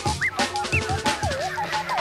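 Drum and bass music from a live DJ set: rapid breakbeat drums under a high synth line that swoops up and down in pitch several times.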